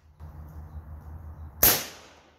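A single suppressed rifle shot about one and a half seconds in, sharp and followed by a short decaying tail: a Zastava M90 firing 5.56 M193 ammunition through a Dead Air Sandman S suppressor, with its gas regulator on the lowest setting.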